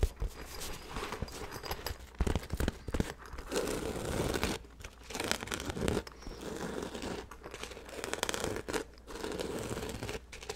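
Fingers and nails scratching and rubbing over a black fabric bag held close to the microphone. The noise comes in irregular bursts with short pauses between strokes.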